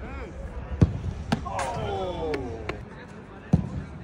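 Football being struck hard in a shooting drill: sharp thuds of the ball about a second in, again just after, and once more near the end. In between, a voice calls out in a long falling tone.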